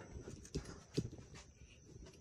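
A few faint knocks, about three, spaced roughly half a second apart.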